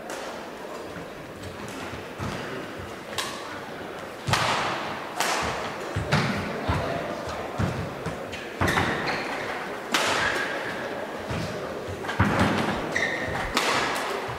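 Badminton rally: rackets striking the shuttlecock about a dozen times, roughly once a second, louder from about four seconds in. Short squeaks of shoes on the court are heard between the strokes.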